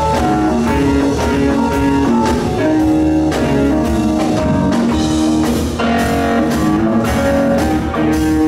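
Live blues-rock band playing loudly: electric guitar and keyboards over a drum kit, with held notes and a steady drum beat.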